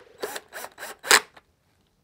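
Four short rasping bursts from a DeWalt cordless drill-driver run in quick pulses to drive a facemask clip screw on a Riddell Speed football helmet. The last burst, a little after a second in, is the loudest.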